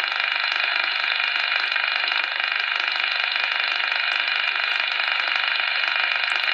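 Steady hiss of band noise from a transceiver's speaker tuned to 27.670 MHz upper sideband, with no station coming through.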